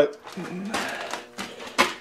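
Rustling handling noise with two sharp clicks, one about a second and a half in and a louder one just before the end.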